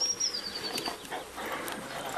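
Newfoundland dog taking cake from a hand and chewing it, with faint soft smacking clicks. A thin, high whistle-like tone falls slightly during the first second.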